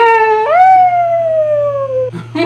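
A loud, long cartoonish vocal call from a puppet character, held for about two seconds: it jumps up in pitch about half a second in, then slides slowly downward and breaks off.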